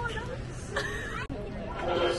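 Voices of people chattering in the background, with one short voiced sound partway through and a single light click.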